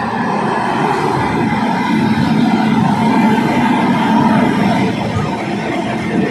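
Steady running noise of the Howrah–Puri Superfast Express, heard on board as the train moves, an even, continuous noise.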